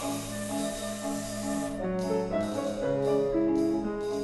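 Small chamber orchestra playing an instrumental passage of a contemporary opera score: held notes that change pitch, with short repeated high notes joining about two seconds in.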